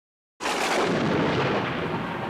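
Silence, then about half a second in a sudden loud rush of noise with no clear pitch, holding steady and easing slightly: the opening sound of the channel's logo intro.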